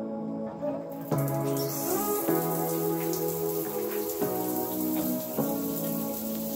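Background music with slow held notes, joined about a second in by a steady hiss of water spraying from a running shower.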